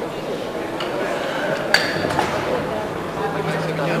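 Murmur of voices in a large hall, with a single sharp metallic clink a little under two seconds in. A low steady hum joins near the end.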